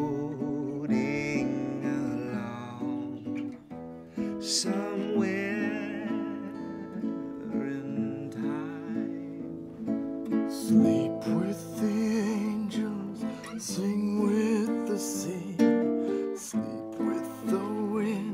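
Slow song on acoustic guitar, strummed and plucked, with a man's voice singing long, wavering held notes over it.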